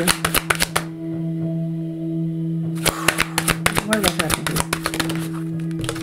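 Tarot cards being shuffled by hand: a quick run of card flicks and slaps that stops about a second in and starts again near the three-second mark. A steady low hum of background music runs underneath.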